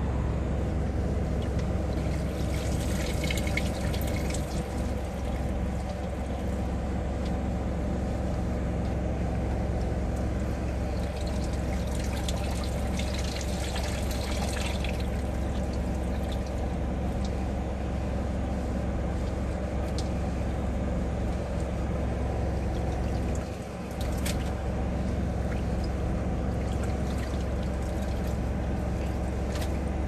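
Water trickling and pouring in a portable twin-tub washer as wet, rinsed laundry is handled, over a steady low machine hum. The water sounds come in stronger spells about three seconds in and again from about twelve to fifteen seconds in.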